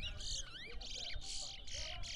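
Caged towa towa (chestnut-bellied seed finch) singing: a quick run of about five short, high, buzzy trilled phrases in close succession.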